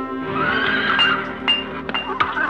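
Radio-play sound effects of a farrier's forge over music: a horse whinnies, then a hammer strikes an anvil three times, about half a second apart, each blow ringing on.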